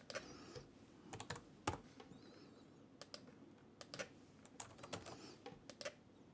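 Faint typing on a computer keyboard: irregular, scattered keystrokes.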